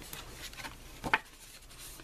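Sheets of cardstock being handled, with faint dry rubbing of paper and one sharp tap about a second in.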